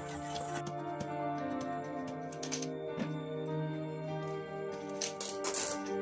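Background music with slow, sustained notes. A few faint clicks and rattles from handling the rice cooker's metal and wiring sound through it, about halfway in and twice near the end.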